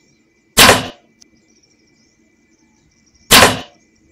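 Two compound-bow shots, each a sudden loud release that dies away within half a second; the first comes about half a second in, the second about three seconds later.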